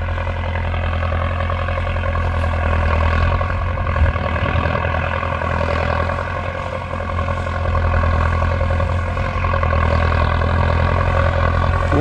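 Belarus 1025 tractor's turbocharged diesel engine running steadily under load as it pulls a tillage implement through the soil, a deep, even drone that grows louder in the last few seconds as the tractor comes closer.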